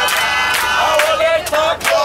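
A group of voices singing a call-and-response gospel praise song, with hand claps and plastic water bottles beaten together on a steady beat of about two a second.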